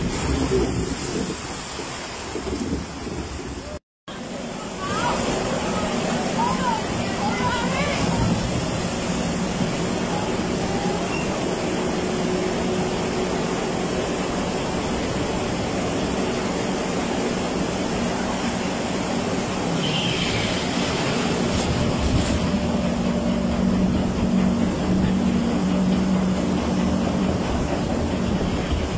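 Log flume boat in churning water, splashing, for the first few seconds. After a short break, the steady rumble and low hum of the lift-hill conveyor hauling the boat up, growing stronger near the end.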